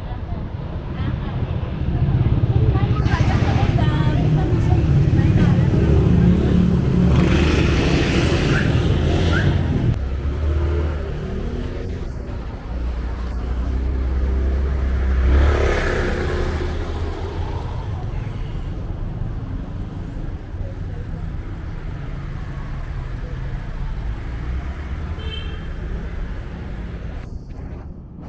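Street traffic: engines of vehicles passing close by, loud for several seconds from about two seconds in and again just past the middle, over a steady hum of traffic.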